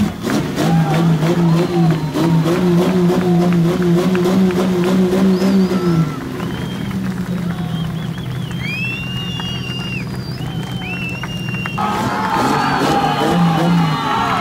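Crowd cheering and whistling over music, with the low steady sound of an off-road racing buggy's engine running.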